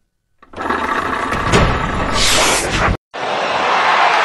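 Broadcast intro sound effects: a loud rushing noise over a low rumble starts about half a second in, with a sharp hit and then a rising sweep. It cuts off abruptly about three seconds in, and a steady rushing noise follows.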